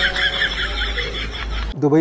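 A horse whinny used as a sound effect in the clip's soundtrack: one long, quavering call that cuts off abruptly near the end, where a child's voice begins.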